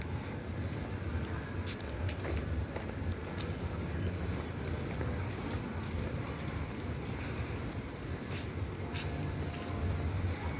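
Steady outdoor urban ambience with a low rumble, picked up by a handheld phone microphone while walking, with a few faint clicks.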